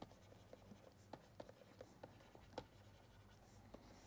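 Faint ticks and scratches of a stylus writing on a pen tablet, about nine light taps spread through an otherwise near-silent room.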